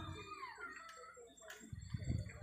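A brief pause in a man's amplified preaching. There is a faint background with a couple of soft clicks, and his voice starts again near the end.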